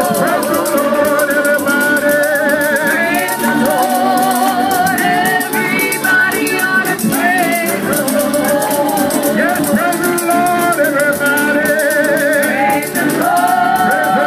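Live church worship music: women singing with heavy vibrato into microphones, over a steady shaking rhythm from a tambourine.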